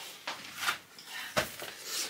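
A few soft knocks and rubbing noises of small shopping items being handled and set aside, the sharpest knock a little past halfway.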